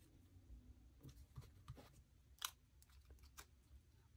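Near silence with a few faint, short clicks and paper ticks as a paper sticker is handled and pressed onto a planner page by fingers; the sharpest click comes about two and a half seconds in.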